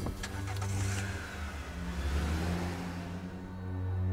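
A car pulling away and driving past, its engine and tyre noise swelling and then fading, over soft background music. A few light clicks come at the very start.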